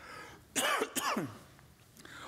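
A man clearing his throat into his fist, two short bursts about half a second apart.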